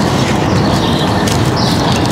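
Cold thin-crust pizza crust crackling as it is folded and squeezed right at the microphone, a dense run of small crackles: the crunch test showing the crust stays crisp after cooling down.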